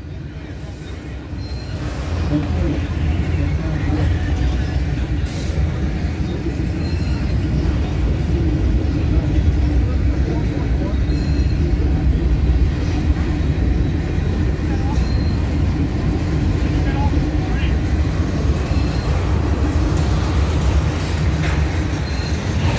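Freight cars rolling slowly past at close range: a steady, loud rumble of steel wheels on rail that swells about two seconds in, with a few brief faint high squeaks.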